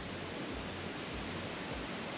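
Steady rush of a river tumbling through a rocky gorge, white water running over stone.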